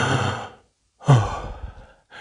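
A man sighing heavily twice, close to the microphone: a breathy exhale, then a louder voiced sigh that drops in pitch.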